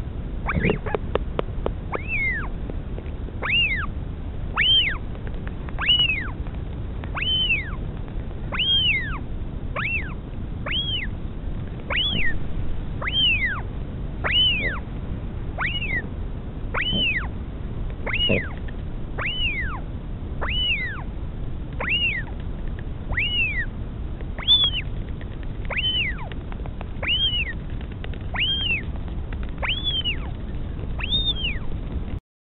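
Northern royal albatross chick begging for food: a thin, high call that rises and then falls, repeated steadily about once every second and a quarter. There are a few quick clicks near the start.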